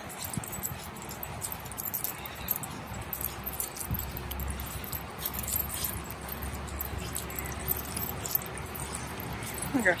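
Light metallic jingling and small clicks of a dog's collar and leash hardware as the dog walks on a leash, over a low rumble that starts about four seconds in.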